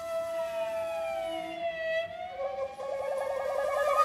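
Shakuhachi and string trio playing a slow passage: one note is held steady while another slides down in pitch over about two seconds to meet it, then slides back up. About halfway through, a fast warbling trill starts and grows louder.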